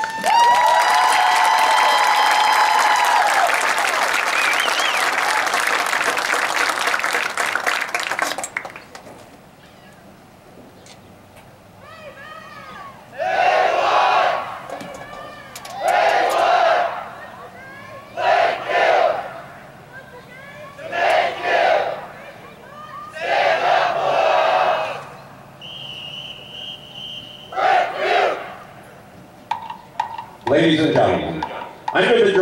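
A crowd cheering and applauding for about eight seconds, with a long held tone in the first few seconds. Then comes a series of short group shouts roughly every two and a half seconds, and near the end a brief high steady whistle.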